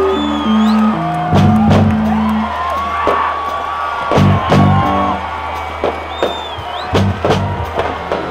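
Live rock band playing: electric guitars with a bending lead line over bass notes and regular drum hits.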